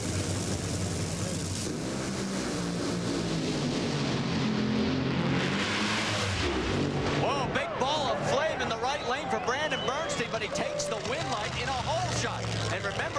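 Two Top Fuel dragsters' supercharged nitromethane V8 engines running at full throttle on a side-by-side pass, heard as loud, dense engine noise. It cuts away about six and a half seconds in, and voices follow.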